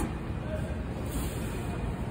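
Steady low rumble of a car assembly plant floor, with faint distant voices in it.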